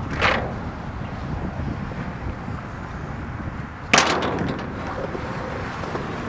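Skateboard wheels rolling on concrete, a steady rumble, broken by one loud, sharp clack of a board about four seconds in.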